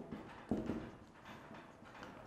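A pause between spoken words: faint room tone with one short click about half a second in.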